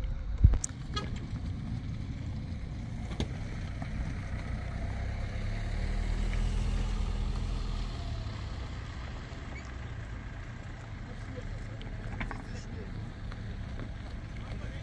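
A motor vehicle's engine running with a low rumble that swells for a few seconds near the middle and then fades. A sharp knock just after the start is the loudest moment.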